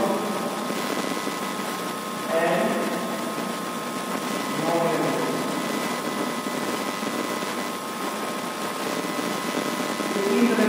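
Two short snatches of a man's voice, about two and a half and five seconds in, over a steady hiss with a thin, high, steady whine.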